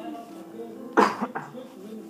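A person coughing, one loud, sudden cough about halfway through followed by a short, weaker second cough, over faint film speech and music playing in the room.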